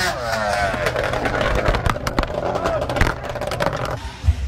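A drag-racing vehicle's engine at the launch, its note falling in pitch over the first second or so. It gives way to a rough, noisy stretch with many sharp clicks and knocks, with people's voices mixed in.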